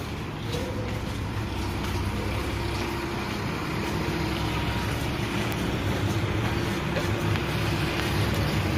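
A steady low rumble with a faint steady hum from a running motor.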